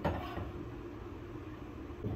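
Steady low background hum and hiss of a kitchen, with pots cooking on the stove.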